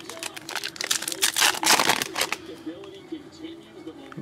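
Plastic wrapper of a 2023-24 Panini Prizm NBA trading-card pack being torn open and crinkled: a dense run of crackles over the first two seconds or so, loudest about a second and a half in, then quieter handling of the cards.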